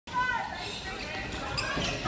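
Basketball dribbled on a hardwood court in a large hall, with players' voices calling out and short high squeaks over the hall's echo.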